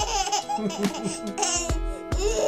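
A baby laughing in short bursts over background music with sustained notes, with a few low thumps near the end.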